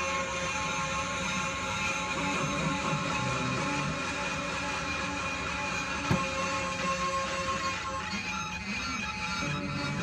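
Modular synthesizer drone: several held electronic tones with a wavering, pan-flute-like lead from a Doepfer A-196 phase-locked loop, fed through an Electro-Harmonix Memory Man analog delay. A single click about six seconds in, and the notes change about eight seconds in.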